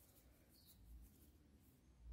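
Near silence: room tone, with only a faint, brief sound about a second in.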